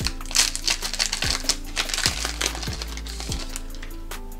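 Foil trading-card booster pack wrapper torn open and crinkling, strongest in the first two to three seconds. Background music with a regular drum beat plays underneath.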